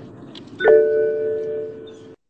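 A bell-like electronic chime sounds once about two-thirds of a second in and slowly rings down, over a fainter steady tone.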